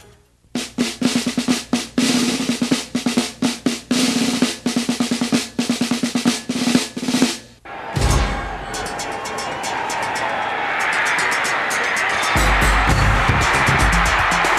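Snare drum playing rapid strokes and rolls for about seven seconds, then a music track with heavy bass and a steady beat comes in about eight seconds in.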